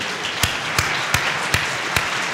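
Audience applauding, with one pair of hands clapping louder and closer than the rest, about three claps a second.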